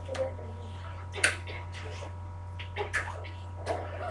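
Quiet classroom room tone with a steady low electrical hum, broken by about five small sharp clicks and taps from students at their desks while they write.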